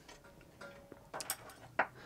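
A few light metallic clicks and ticks as a small bolt, bracket and Allen key are handled against a CNC machine's aluminium frame, the loudest a little over a second in and another near the end.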